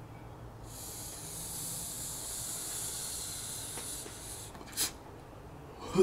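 Long draw on two Cake disposable vape pens at once: a steady, high hiss of air pulled through the mouthpieces for about four seconds, then a short sharp breath just before the end.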